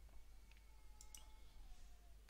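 Near silence, with a few faint computer mouse clicks about halfway through.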